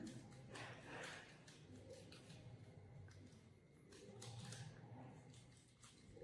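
Near silence, with faint soft rustles of paper being folded and handled.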